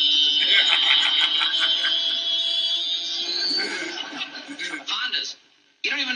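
A high, steady motorcycle-like whine from the played clip, rising slightly about three and a half seconds in, then giving way to voices.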